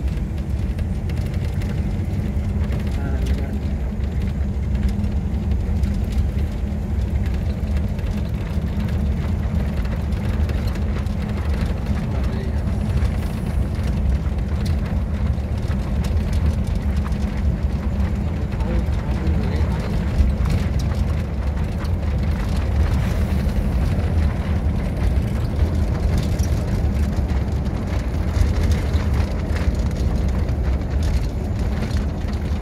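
Steady low rumble of a moving vehicle, with wind buffeting the microphone.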